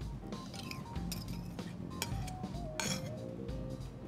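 A spoon clinking and scraping against a fluted tart tin and mixing bowl as an egg-and-cream quiche filling is poured and stirred in, a handful of sharp clinks with one longer scrape near the end, over soft background music.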